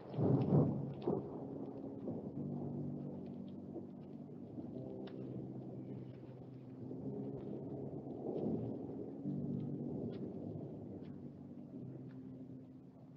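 Film soundtrack of low, sustained droning tones that shift pitch every few seconds. A loud rumble comes about half a second in, and a softer one near eight and a half seconds.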